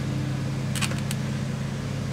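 A steady low machine hum with a few light clicks about a second in, from hands handling the pressure washer's frame and cover.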